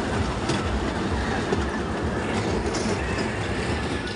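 Small fairground kiddie train ride running on its curved track: a steady rumble of wheels on rails with uneven low knocks, heard from a seat on board.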